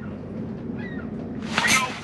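A low steady hum, then about one and a half seconds in a man's sudden loud, excited exclamation as a fish strikes and he sets the hook.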